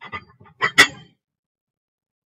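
Weight plates knocking and scraping against each other as they are set onto a stacked load, ending in one sharp metallic clank about a second in.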